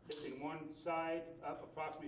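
A man's voice speaking, narration; no other sound stands out.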